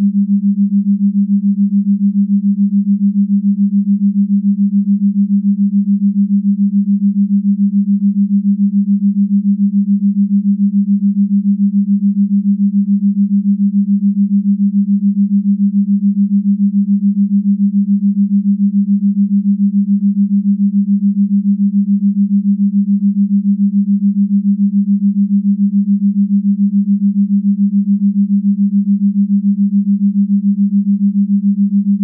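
Binaural-beat brainwave tone: a single low, steady hum that pulses quickly and evenly in loudness.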